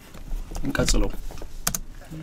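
A run of irregular light clicks and taps, with a short bit of speech about a second in.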